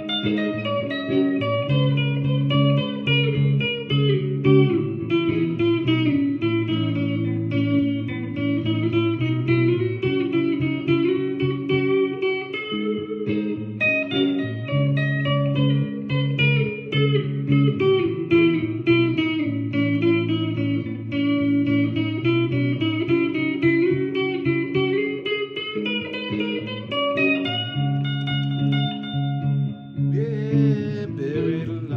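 Les Paul-style electric guitar with a capo, played solo: a quick picked melody over low sustained bass notes that come back in a repeating pattern.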